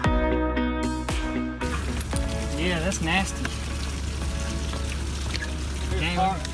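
Guitar background music that cuts off about one and a half seconds in, giving way to a steady outdoor hiss with a brief voice.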